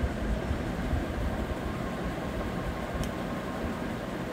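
Steady low background hum and hiss, with a faint click about three seconds in.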